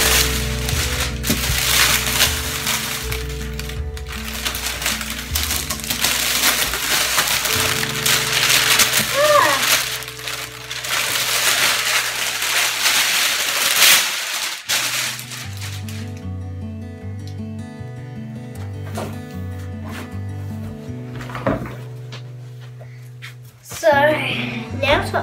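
Plastic wrapping crinkling and rustling as it is pulled off a cardboard box, over background music. The crinkling stops at about 14 s, leaving the music with a steady repeating bass line.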